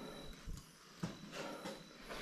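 Faint scattered knocks and rustles from someone moving about with a handheld camera. A cricket's thin, steady high chirp runs underneath and stops about half a second in.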